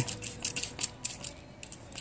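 Hand-held trigger spray bottle being pumped, spritzing water onto a toroid transformer: an irregular run of short clicks and hissy spurts, several a second.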